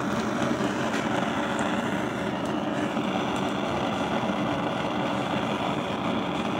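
Gas stove burner flame burning with a steady, even rushing hiss. The owner finds the flame noise unusually loud and says it is new in the last month or two.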